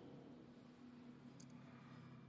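Near silence: faint room tone with one short, high click about one and a half seconds in.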